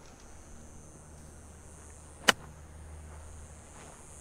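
A single crisp strike of an iron on a golf ball, a short approach shot toward the green, about two seconds in. A faint steady high-pitched hiss runs underneath.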